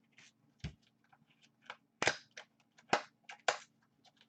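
Sharp snaps and light crinkling of a trading-card box being opened by hand. There are four snaps, one about half a second in and three close together in the second half, with faint rustling between them.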